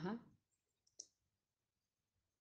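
Near silence in a pause of speech, with a single short click about a second in.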